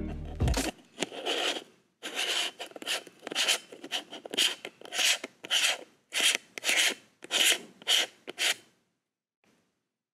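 Fingers working the Neewer wide-angle conversion lens onto its mount on a Sony ZV-1, right at the camera's microphone. The handling makes about a dozen short rubbing, scraping strokes, roughly two a second, which stop near the end.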